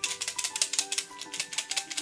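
Small hard fizzy candies rattling inside a plastic tube dispenser shaken rapidly over a palm, a quick run of clicks; the candies are stuck at the opening and won't come out.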